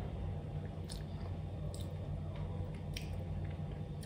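Faint mouth sounds of a person tasting soft coconut yogurt off a spoon: a few soft wet smacks and clicks, over a steady low hum.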